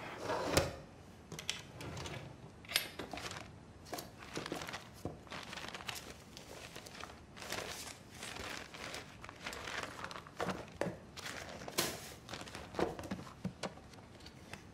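Sheets of paper rustling and crinkling as they are handled and sorted, with a few light knocks from a wooden drawer.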